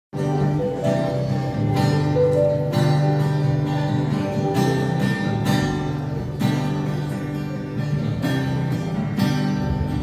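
Acoustic guitar strummed alone, sustained chords with a stroke roughly every second, the instrumental opening of a worship song.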